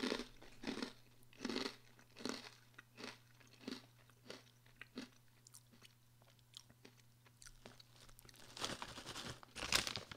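Close-up chewing of hard, crunchy pretzel pieces: a crunch roughly every three-quarters of a second for the first five seconds, growing fainter as the pieces break down. Near the end, the snack bag rustles as a hand reaches into it.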